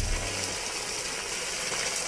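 Steady hiss of a hose nozzle spraying a fine mist of water.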